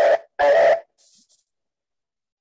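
A man's voice coming through a video call, finishing a phrase, then a brief faint hiss and a second of dead silence in the pause between words.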